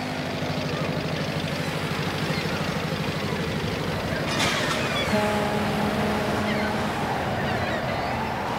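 Boat engine running with a rapid, even beat over the rush of water. A steady tone sounds for about two seconds partway through.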